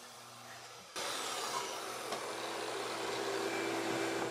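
Festool TS 75 plunge-cut track saw running along its guide rail through an angled cut in a board, with dust extraction on its hose. It comes in suddenly about a second in as a steady hum with a hiss of cutting.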